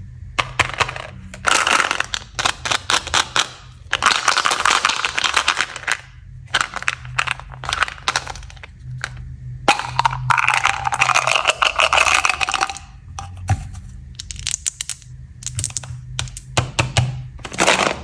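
Close-up handling of plastic chewing-gum containers: rapid clicks, taps and rattles of fingers, flip-top lid and gum pellets against the plastic, in several bursts a second or two long with short pauses between.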